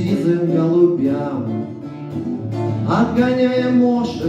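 Acoustic guitar played live with a man singing over it; about three seconds in the voice slides up into a long held note.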